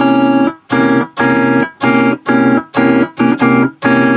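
Electric guitar playing a C7♭9 chord (notes C, E, B♭, D♭; fingered x32320x), strummed again and again about twice a second in short strums with brief gaps. The chord is heard on its own and left unresolved.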